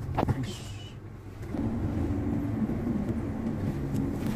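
Car engine and road noise heard from inside the cabin while driving slowly, with a short click near the start; the engine's low hum gets louder about a second and a half in.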